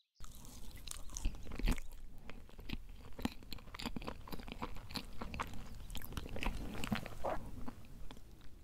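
A person chewing a bite of crepe cake layered with whipped cream, close to the microphone: a dense, irregular run of small mouth clicks and smacks that starts a moment in.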